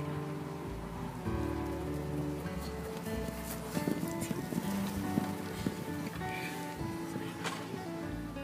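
Background music with held, sustained notes. Scattered light clicks and rustles come through between about three and seven and a half seconds in.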